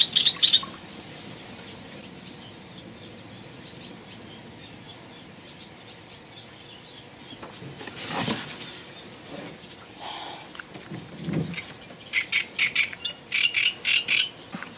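Small birds chirping: a quick burst of chirps at the start and a longer run of rapid chirps in the last two seconds, over a faint background. A short rustling noise comes about eight seconds in.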